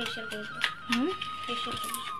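Girls' voices talking in short bursts, with a thin, steady high tone running behind them.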